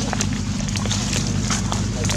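Footsteps on dry leaf litter: scattered sharp crunches and clicks over a steady low hum.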